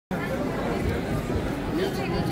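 Crowd chatter: many voices talking at once in a steady babble, with no single speaker standing out.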